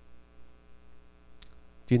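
Steady low electrical mains hum through the microphone and amplifier chain, with a man's voice starting just at the end.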